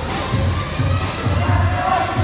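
People shouting and cheering encouragement over loud gym music with a steady bass beat.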